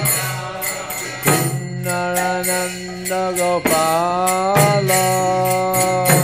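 Devotional kirtan music: a voice singing long, bending melodic notes over a steady low drone, with hand cymbals (kartals) striking a steady beat.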